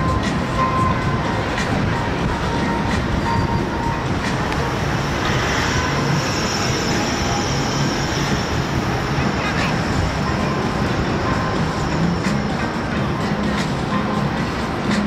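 Busy city street noise: a steady, dense rumble of traffic with faint voices and music mixed in, and a brief hiss in the middle.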